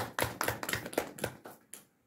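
Applause: a run of separate hand claps that thins out and stops shortly before the end.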